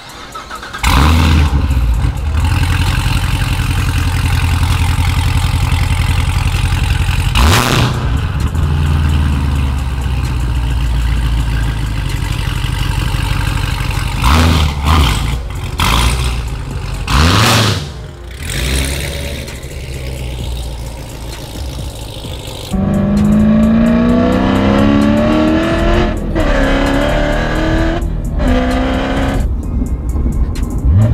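Supercharged 6.2-litre LT4 V8 of a C7 Corvette Z06 starting about a second in, then idling with several sharp blips of the throttle. In the last third it accelerates hard through the gears of its manual gearbox: the pitch climbs, then drops back at each upshift.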